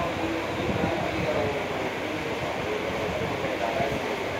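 Steady background noise with faint, indistinct voices in the distance.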